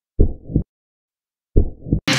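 Heartbeat sound effect: two low double lub-dub thumps, about a second and a half apart, with dead silence between them.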